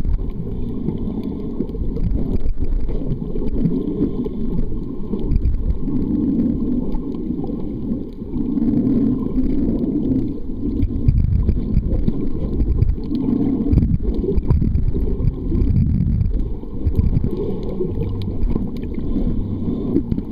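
Muffled underwater sound from a camera held below the surface: a continuous low rumble of water moving around the housing, with some low wavering hums.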